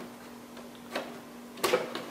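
Plastic clicks as a toner cartridge is handled and released in a Ricoh Aficio 2238c copier. There is a faint click about a second in and a louder clack near the end, over the copier's steady hum.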